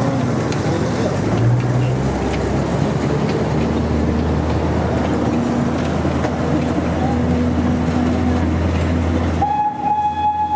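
The Botchan Ressha, a diesel replica steam locomotive, pulls away: a steady low engine rumble mixed with the noise of its wheels on the rails. Near the end a long, steady whistle tone starts.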